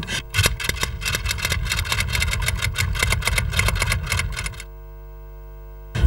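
A small engine running with a rapid, regular beat of about eight pulses a second over a low rumble. It stops suddenly about four and a half seconds in, leaving a quieter steady hum.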